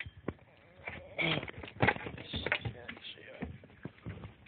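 Irregular knocks, clicks and rustling from close handling on wooden dock boards, at uneven intervals and loudest in the middle.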